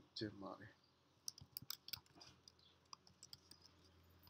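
Faint clicks of computer keyboard keys being typed: a quick run of about six keystrokes about a second and a half in, then a few single keystrokes.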